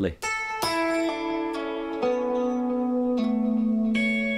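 Electric guitar playing a line of single notes one after another, each left to ring on under the next so that they sustain together like a chord. The lowest note steps down in pitch twice, about two and three seconds in, and a higher note comes in near the end.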